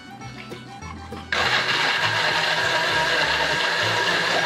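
Countertop electric blender switched on about a second in, then running steadily and loudly as it purées green tomatoes, onion, garlic, chili and water into a green salsa.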